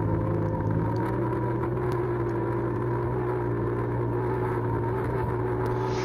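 Off-road side-by-side (UTV) engine running steadily as the vehicle climbs a sandy hill, heard through the vehicle-mounted action camera.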